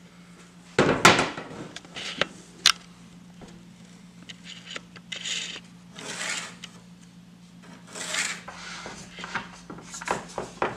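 Hands working on a sheet of plywood: a knock about a second in, two sharp clicks, then several short scraping and rubbing sounds as a pencil marks the wood and an aluminium track guide is laid and slid on it. A steady low hum runs underneath.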